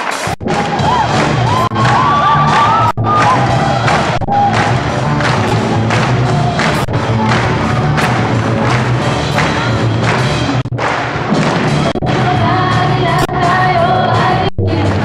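Live worship band playing an upbeat song: drum kit keeping a steady beat under electric and bass guitars, with a woman singing lead into a microphone.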